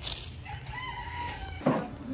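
A rooster crowing once: a single pitched call of about a second that rises a little and then falls.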